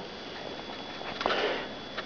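A man breathing in through his nose, a soft sniff a little past the middle, over faint room hiss.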